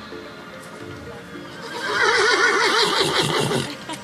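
A horse whinnying once: a quavering call of about two seconds that starts about two seconds in, over background music.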